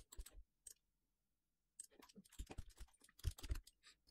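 Faint computer mouse and keyboard clicks: a few scattered taps, then a quick cluster in the second half.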